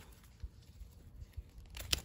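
Garden pruners snipping through a plant stem once: a single sharp click near the end, with only faint handling noise before it.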